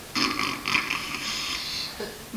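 A man making a wordless, mumbled vocal sound for nearly two seconds, quieter than his speech: a mocking imitation rather than words.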